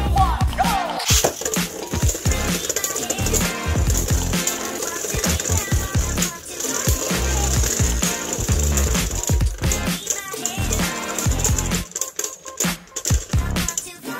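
Background music over Beyblade Burst spinning tops whirring and scraping on a plastic stadium floor, with occasional sharp clicks as the tops hit each other.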